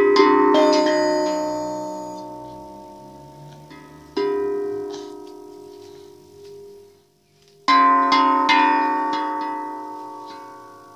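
A hang (steel handpan) struck by a toddler's hands in uneven clusters of notes: ringing tones at the start, again around four seconds in, and a fuller flurry just before eight seconds, each group dying away slowly.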